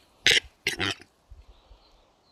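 Displaying male western capercaillie calling at close range: three loud, short, hoarse rasping calls in quick succession in the first second, then quiet.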